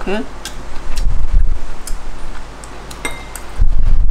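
Light clicks of snail shells against a ceramic plate as cooked river snails are picked out one by one; the click about three seconds in rings briefly. Dull low thuds come about a second in and again near the end.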